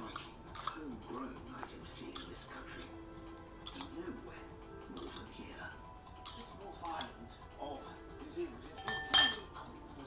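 Metal hand-mixer beaters tapping and clinking against a metal mixing bowl as meringue is knocked off them. There are scattered light clicks, then a loud ringing clang about nine seconds in.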